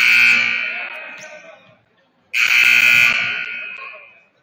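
Gymnasium scoreboard horn sounding twice, two loud buzzer blasts about two seconds apart, each starting abruptly and fading away over a second or so.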